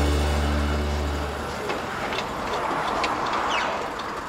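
Closing music dies away in the first second and a half, leaving a VW bay-window camper van with an air-cooled flat-four engine driving off, its engine and tyre noise slowly fading. A few faint high chirps come near the end.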